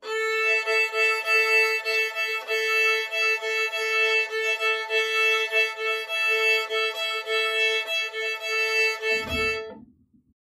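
Violin playing the shuffle bowing pattern (one long bow and two short bows) on the open A and E strings together as a double stop, in an even repeating pulse that stops just before the end. A soft low thump sounds near the end.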